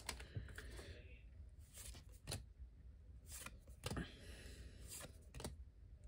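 Quiet, scattered clicks and soft rustles of Weiss Schwarz trading cards being handled and slid through the fingers, with a few sharper card-edge ticks now and then.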